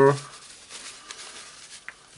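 Faint rustling of a cloth rag handled in gloved hands while a small part is wiped, with a small click near the end.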